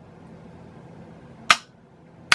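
One sharp click about one and a half seconds in: a toggle switch being flipped on the front panel of an Altair 8800 replica computer.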